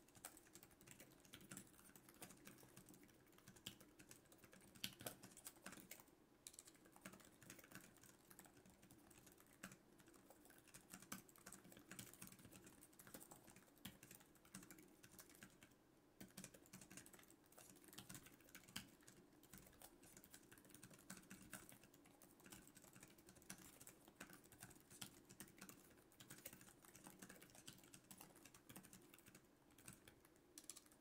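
Fast, continuous typing on a Lenovo ThinkPad X1 Carbon laptop keyboard: a quiet, dense run of light key clicks from its scissor-switch keys.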